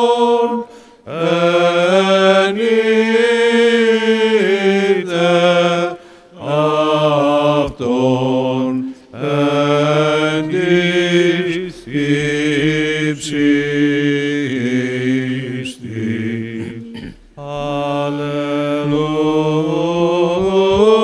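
Byzantine church chant sung during communion: long, drawn-out sung phrases with gliding ornaments, broken by short pauses for breath.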